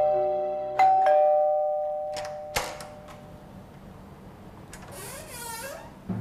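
Two-note ding-dong doorbell chime, high then low: the tail of one ring at the start, then a second ring about a second in that rings out. A few sharp clicks follow about two and a half seconds in, and there is a brief creak near the end.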